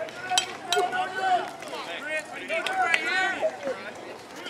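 Voices calling and shouting across a baseball field, with two sharp clicks about half a second in.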